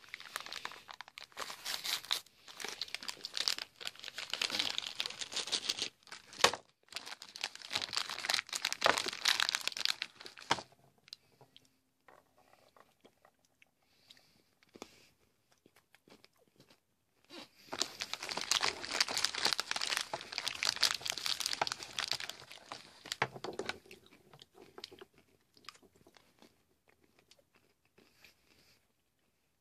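Close-up crunching and chewing of a Peanut Butter M&M's egg, its hard candy shell cracking between the teeth, in two long spells with a quiet stretch between them. The plastic wrapper crinkles as it is bitten open near the start.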